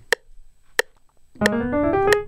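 Metronome clicking at 90 beats per minute. About one and a half seconds in, a piano starts a fast rising run in time with it.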